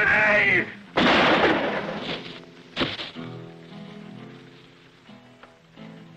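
A man's shout, then a gunshot about a second in that dies away slowly, and a second sharp shot near the three-second mark. Film score music then holds steady notes and fades.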